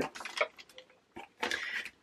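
A small holographic foil ziplock bag being handled: soft crinkling rustles and a single light click.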